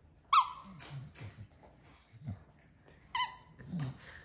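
A dog's squeaky toy squeaking twice as the Staffordshire bull terrier chews it, once just after the start and again about three seconds in.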